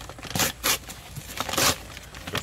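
Multi-layer paper charcoal bag being torn by hand, a few short ripping and crinkling sounds.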